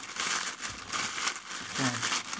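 Grey plastic postal mailer bag crinkling and rustling in uneven bursts as hands pull it open and handle its contents.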